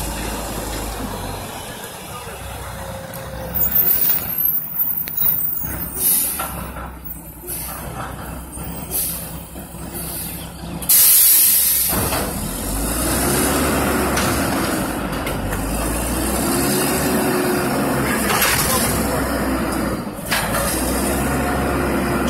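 Front-loader garbage truck's diesel engine running as it pulls up to the dumpsters, with a loud air-brake hiss about eleven seconds in as it stops. The engine then revs up and down repeatedly as the hydraulic front arms lift a container over the cab.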